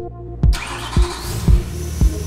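BMW E92 M3's V8, fitted with a carbon-fibre MSL intake manifold and open intake trumpets, starting up. There is a sharp thump, then a burst of hiss with a rising whine as it catches about half a second in. It then runs with low thumps about twice a second.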